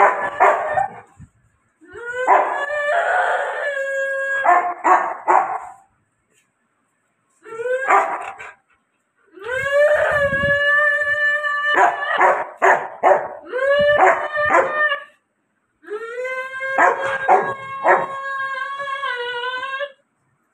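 A dog howling in about five long, fairly level calls with pauses between them, broken by short barks.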